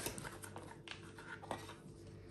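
A few faint clicks and taps of a solid-state drive and its external enclosure being handled and set down on a table, over a faint steady hum.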